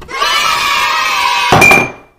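An edited-in sound effect: a loud, steady chord-like swell of many tones, like a crowd cheering, cut off about one and a half seconds in by a sharp hit with a short ringing ping.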